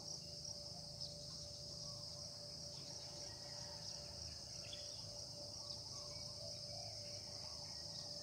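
Faint, steady high-pitched chirring of insects, such as crickets, with a thin steady hum beneath it.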